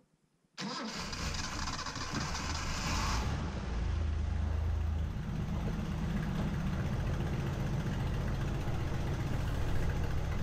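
Datsun L-series inline-six engine starting: a brief crank, then it catches and settles to a steady, rough idle. It is running pretty poorly because of a massive vacuum leak.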